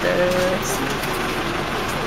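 Steady engine and road noise heard from inside a slowly moving vehicle, with a short spoken word at the start.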